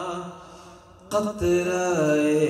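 A man singing a devotional Urdu kalam in a melodic chant into a microphone. A held note fades away, and about a second in a new phrase begins and settles into a long held note.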